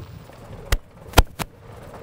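Four sharp, short clicks or knocks over a faint low background, the loudest a little over a second in and another close after it.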